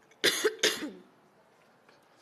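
A person coughing twice in quick succession, about as loud as the speech around it.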